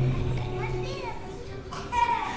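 Children's voices chattering, over a low held musical note that fades out about a second in.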